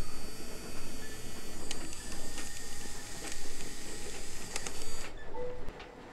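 Instant camera's motor whirring as it pushes out the print, with a few clicks along the way, cutting off suddenly about five seconds in.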